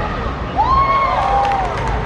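Children's voices shouting and cheering as a goal goes in: several high cries that rise and fall, over a steady low outdoor rumble.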